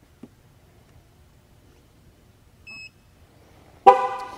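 A TPMS tool gives one short high beep as it triggers the left front tyre pressure sensor. Near the end, the GMC Yukon's horn sounds one loud short chirp that fades away: the vehicle's signal that it has accepted and learned the sensor.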